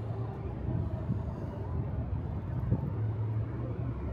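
Road traffic on a multi-lane city street: cars passing below, heard as a steady low rumble.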